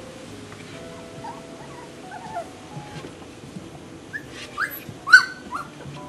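Golden retriever puppy whining: a few short, high cries that rise in pitch, softer ones in the first half and a louder cluster near the end, the loudest about five seconds in.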